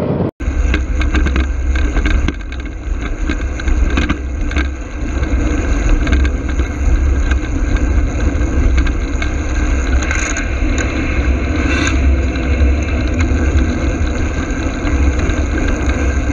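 Steady wind rumble on a small camera microphone moving along a road, with road noise underneath; the sound breaks off briefly just after the start, and two short hissing swells come about ten and twelve seconds in.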